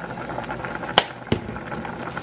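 Two sharp clicks about a second in, a third of a second apart, from a seasoning shaker being handled over stovetop pots, over a low steady hiss.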